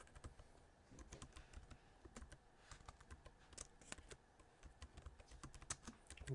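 Faint, irregular keystrokes on a computer keyboard as a word is typed out.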